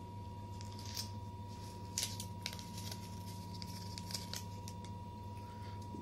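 A chocolate candy's paper wrapper being torn and peeled open by hand: scattered short crinkles and rips.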